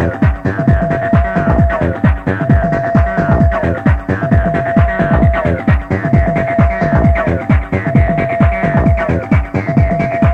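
Electronic dance music from an early-1990s club DJ set, taped on cassette. A fast, driving beat carries deep bass notes that drop in pitch, several a second, under a high held synth note that slides down about every two seconds.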